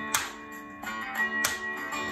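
Guitar music playing a song's instrumental lead-in before the vocal comes in, with chords ringing on and two sharp strums about a second and a quarter apart. It is heard as a backing track.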